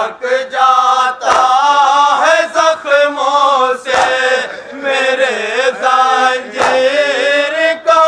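Men chanting a noha, a Shia lament, with several voices together, cut by several sharp slaps of hands on chests (matam) a second or more apart.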